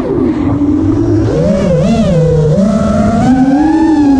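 FPV quadcopter's motors whining, the pitch swooping up and down with throttle as the drone banks and dives.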